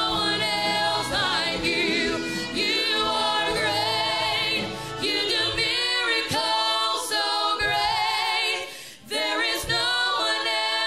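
Church worship singers singing a gospel worship song together, several sustained voices with vibrato. A low accompaniment under them drops away about halfway through, leaving mostly voices.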